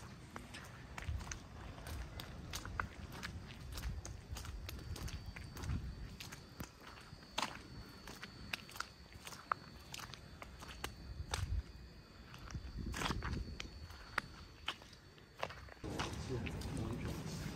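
Footsteps walking on a snow-covered street, with scattered sharp clicks and a low rumble.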